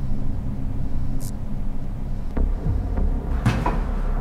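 A steady low droning rumble, broken by a sharp knock a little past two seconds and a louder knock with a rattle about three and a half seconds in.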